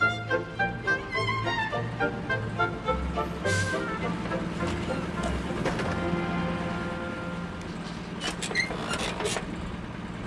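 Orchestral theme music with a steady pulse, ending about four seconds in. A bus engine then idles with a steady low hum, with a few sharp clicks near the end as the side luggage hold is opened.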